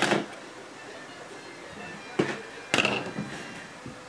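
Sharp knocks on a tabletop: one right at the start, then two more with a short clatter about two to three seconds in, as a plastic marker pen is set down on the table. Faint background music runs underneath.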